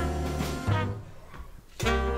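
Live jazz quintet playing, with bass, horns and piano. About a second in the band drops away almost to a pause, then comes back in together, loud, just before the end.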